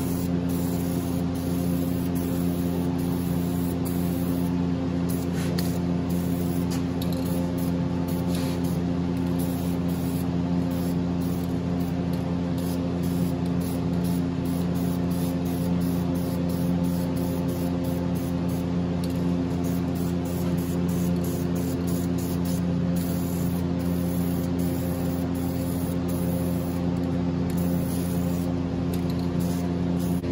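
Aerosol spray-paint can hissing, stopping and starting in repeated short bursts, over a steady droning hum.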